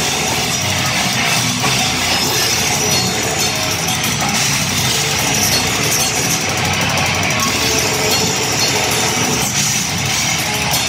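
Live rock band playing loudly and without a break: electric guitars, bass guitar and drum kit.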